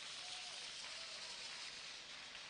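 Audience applauding, heard as a faint, even patter.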